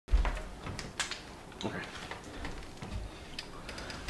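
Light knocks and clicks of a metal-frame school chair desk as a person sits down and settles into it, with a low thump right at the start.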